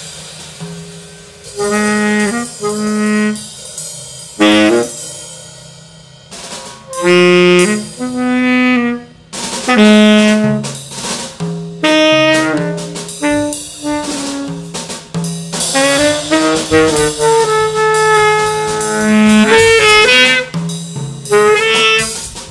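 Tenor saxophone playing short jazz phrases with brief pauses between them, over a Gretsch drum kit with Paiste Formula 602 cymbals.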